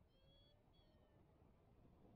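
Near silence, with two faint, short high-pitched tones in the first second.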